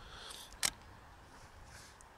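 A single sharp click from a DSLR camera as its controls are worked to reset the exposure, a little past halfway, over a faint steady hiss.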